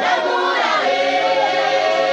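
A large group of voices singing together in chorus, steadily, with no break.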